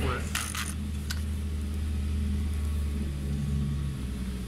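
The multi-tool's small engine runs steadily with a low hum while its drive shaft has slipped out, so the saw head is not being driven. In the first second or so, a few sharp metallic clinks come from the metal shaft being handled.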